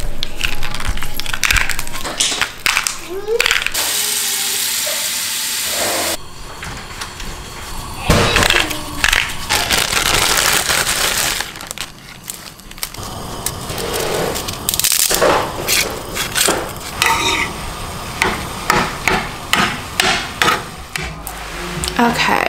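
Kitchen cooking noises: knocks and clicks of containers, pans and utensils on a counter and stove, with two stretches of steady hiss.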